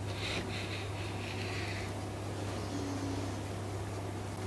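Faint hiss of a kitchen knife slicing through dry-cured, smoked chicken breast on a wooden cutting board, mostly in the first two seconds, over a steady low hum.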